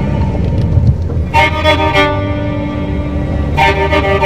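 Vehicle horns honking twice, about a second in and near the end, over a steady low rumble of car and traffic noise, with background music underneath.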